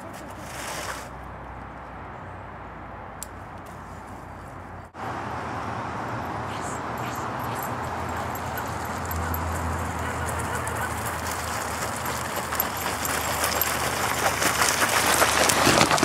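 Rough, gritty scraping of a tire being dragged over the ground by a pulling dog, growing louder as it comes closer, with a dense crackle of small clicks near the end.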